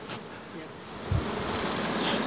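Honey bees buzzing around an opened hive, with a single dull knock a little over a second in.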